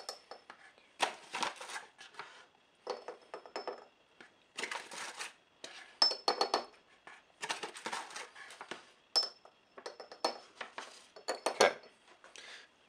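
A small measuring scoop scraping powder and clinking against a glass shot glass as flat scoops are measured out. There are about eight short scrapes and clinks roughly a second apart, a few with a brief high glassy ring.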